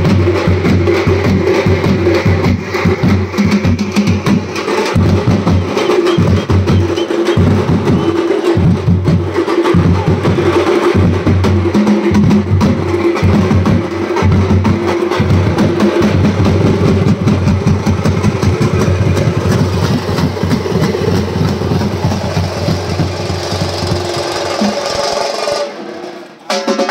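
Drum ensemble of large double-headed bass drums, struck with curved sticks, and hand-held frame drums, beating a fast, dense rhythm. The drumming drops out briefly near the end.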